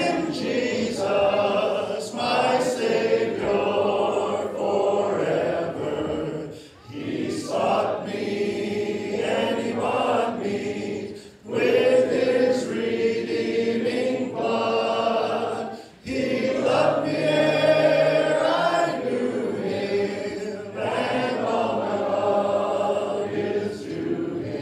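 Congregation singing a hymn chorus a cappella, many unaccompanied voices in long phrases with short breaks between them.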